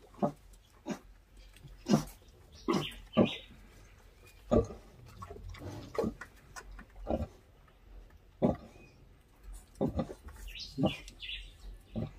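Pigs grunting: a nursing sow and her suckling newborn piglets, in short grunts at uneven spacing, about one a second.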